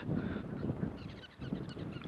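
Faint honking calls of geese over a low background of wind noise.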